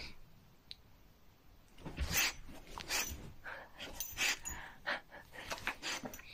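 Bull terrier's breathing and sniffing. The short, noisy puffs come quickly one after another and start about two seconds in.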